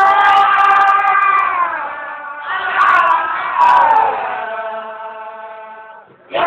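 A man chanting a Sufi zikr in a high, strained voice, holding long notes. A new phrase begins about halfway through, its pitch sliding down, and the voice fades toward the end.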